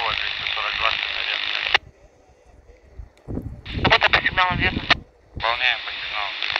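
Railway-band radio traffic from a Quansheng UV-K5 handheld's speaker: a hissy voice transmission cuts off with a short burst of noise, the squelch tail, about two seconds in. After a pause another short transmission comes in and ends abruptly, and a third starts near the end.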